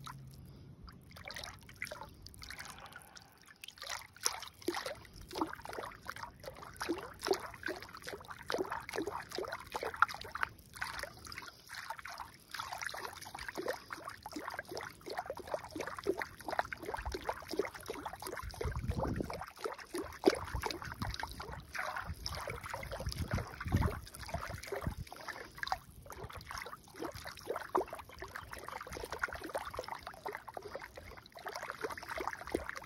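A hand swishing and splashing in shallow, muddy pond water, a steady run of small splashes and drips. Two low rumbles come in, one a little past halfway and one near 24 seconds.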